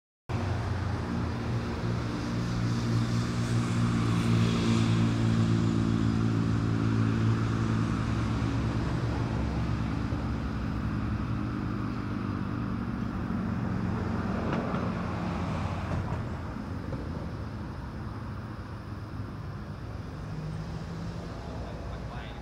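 Road traffic ambience: a steady low engine hum under the wash of passing traffic, easing down in the second half.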